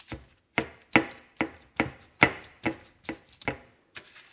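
A run of about eight sharp knocks, evenly spaced at roughly two to three a second.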